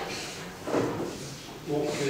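Two brief scuffing handling noises, about three quarters of a second apart, then a man starts speaking.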